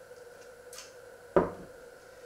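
A glass of water set down on a wooden table: one sharp knock about one and a half seconds in, with a brief ring after it.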